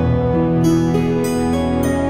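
Calm instrumental new-age music: a slow melody of held notes that moves to a new pitch every half second or so.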